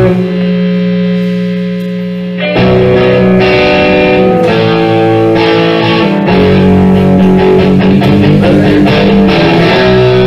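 Live rock band playing, led by electric guitars. A held chord rings and fades for the first couple of seconds, then the band comes back in loudly about two and a half seconds in, with sustained guitar notes changing pitch.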